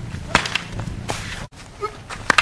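Sharp whip-like swishes of a weapon swung through the air. A quick pair comes about a third of a second in, then a longer swish about a second in, and the sound cuts off abruptly at an edit.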